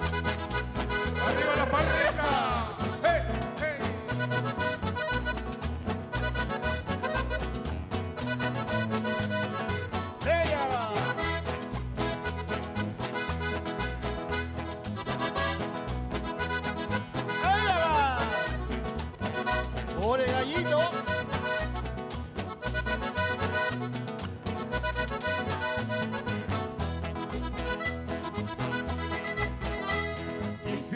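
Live Chilean folk dance music: accordion and acoustic guitar playing with a steady, even beat, amplified over stage loudspeakers.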